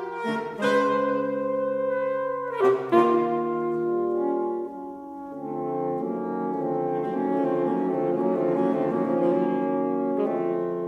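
Saxophone quartet of soprano, alto, tenor and baritone saxophones playing held chords: two sharp accented attacks about three seconds in, a brief drop in level, then a long sustained chord from about five and a half seconds on.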